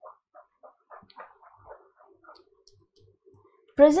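A pause in a lecture, mostly quiet, with faint, scattered small sounds in the room for the first couple of seconds; the lecturer's voice resumes just before the end.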